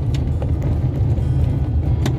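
Car driving along a street, heard from inside the cabin: a steady low rumble of engine and tyres.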